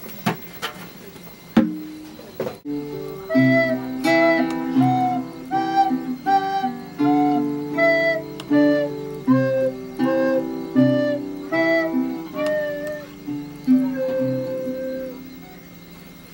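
A few sharp hand-drum taps in the first couple of seconds, then a tune played live on a pitched instrument for about twelve seconds: a melody over low bass notes and chords, note by note, ending on a held note.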